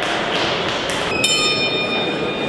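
Boxing ring bell struck once about a second in and ringing on with several high, unevenly spaced tones, over the steady noise of a crowd in a sports hall.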